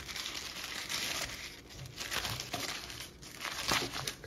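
Thin paper sandwich wrapper crinkling as it is unfolded by hand, with sharper crackles about a second in and again near the end.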